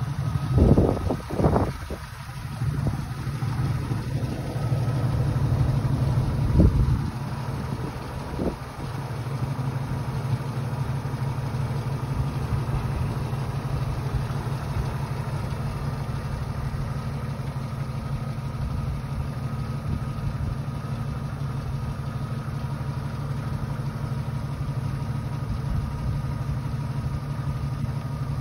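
Jeep Wrangler's 4.0-litre straight-six idling steadily, with a few short, louder bursts in the first eight or nine seconds before it settles to an even run.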